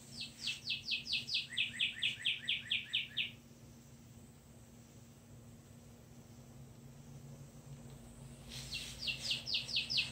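A songbird singing a rapid series of downslurred whistled notes for about three seconds: first a higher run, then a lower, slightly faster run. The same song starts again near the end.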